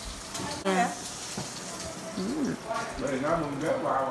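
Indistinct voices of several people talking in short snatches, with a faint steady hiss underneath.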